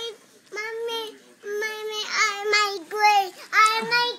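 A young child singing a tune without clear words: a run of short, high-pitched held notes with brief gaps between them.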